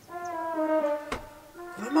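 A man laughing hard in long, high-pitched held breaths: one drawn-out tone of about a second, a shorter one after it, then broken laughter near the end.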